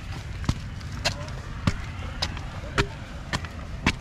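Footsteps climbing concrete steps, a sharp step a little under twice a second, over a steady low wind rumble on the microphone.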